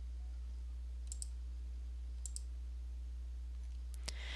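Computer mouse button clicked twice, about a second apart, each click a quick press-and-release double tick. A steady low hum runs underneath.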